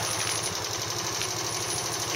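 Honda Magna 50's air-cooled four-stroke single, fitted with a Daytona aluminium bore-up cylinder, idling steadily with an even beat and no abnormal noises.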